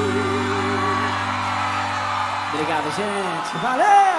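A live band holding a final sustained chord that dies away about three seconds in. A man's voice then calls out through the stage microphone, ending in a long rising-and-falling whoop.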